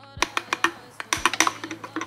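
A spoon clinking and scraping against a drinking glass as the drink is stirred: a quick, irregular run of sharp clicks, over faint background music.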